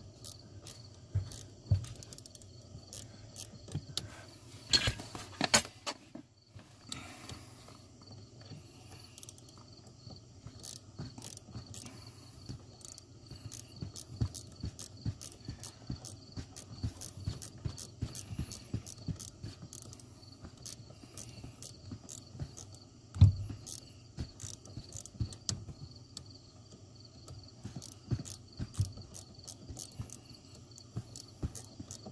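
Hand ratchet clicking repeatedly as a 10 mm socket backs the pinch bolt out of the steering column's universal joint, with a single louder knock a little past the middle.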